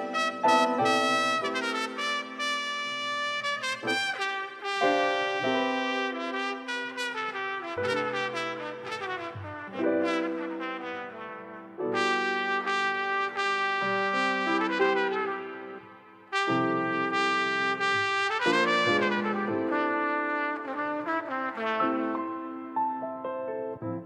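Instrumental smooth jazz led by a horn playing sustained melody notes over changing chords. The music drops away briefly about two-thirds of the way through, then comes back.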